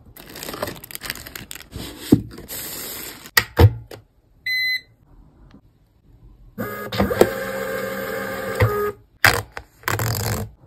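Paper and packaging handled with a few sharp clicks, then one short electronic beep about four and a half seconds in. A MUNBYN thermal label printer then feeds and prints labels for about two seconds with a steady motor whine, followed by a few sharp clicks as the printed label is torn off.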